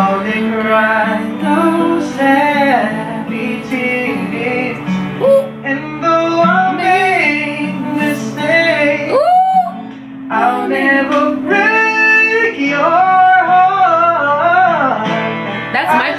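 Acoustic guitar accompanying male voices singing a slow ballad in harmony.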